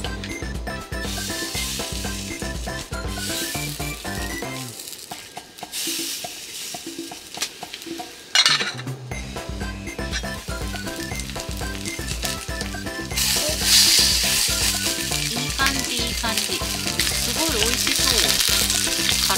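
Chicken pieces shallow-frying in oil in a small pan on a portable gas stove, sizzling, louder near the end, with a sudden sharp burst about eight seconds in. Background music with a steady beat plays over it and drops out for a few seconds in the middle.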